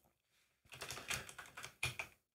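Faint computer keyboard clicks: a quick, uneven run of key presses starting under a second in, as code is selected and edited in a text editor.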